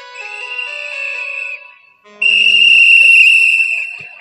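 A whistle blown in two long steady blasts, the second louder, with faint music underneath.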